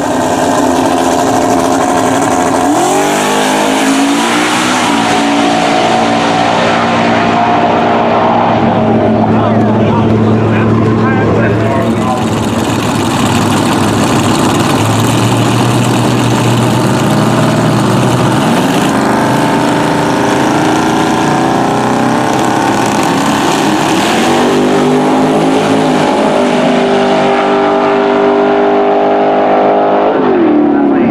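Drag-racing street cars' engines at a drag strip, loud throughout: a note climbs in pitch about three seconds in and holds, then climbs again several times in the second half as cars rev and accelerate.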